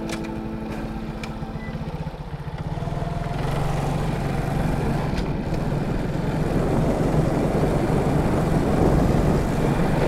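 Background music fading out over the first two seconds. It gives way to a vehicle's engine running and wind noise on the microphone, both growing louder from about three seconds in.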